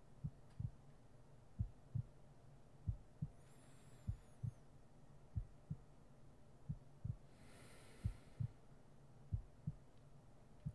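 Slow heartbeat, lub-dub pairs of low thumps about every 1.3 s over a steady low hum. Two soft breaths come about a third of the way in and again near the end.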